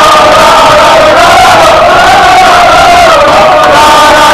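A team of men chanting and shouting together in a victory celebration, one loud unbroken group chant whose pitch wavers up and down.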